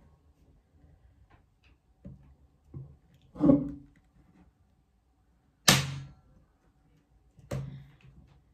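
Electric nail gun firing nails into a glued wood piece: three sharp shots about two seconds apart, the middle one the loudest, with a couple of lighter knocks before the first.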